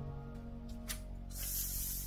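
Soft background music; near the end, a hiss of origami paper being rubbed flat as a fold is creased, after a light crackle of paper about a second in.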